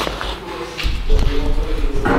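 A freshly rolled sheet-steel cylinder being handled and shuffled on a workshop floor, with a few knocks on the metal.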